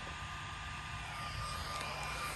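Steady hum of a small electric motor with a thin, constant high whine, holding level without change.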